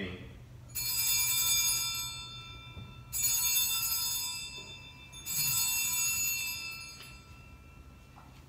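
Altar bells rung three times, each ring a bright jangle of several high tones that fades over about two seconds, marking the elevation of the chalice after the consecration.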